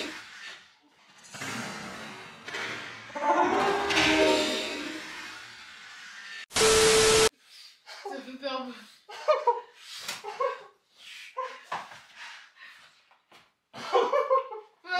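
Voices during a scare prank: a loud burst and a noisy, agitated stretch of raised voices, then a loud steady electronic tone lasting under a second, looking like an edited-in sound effect, followed by several seconds of talking.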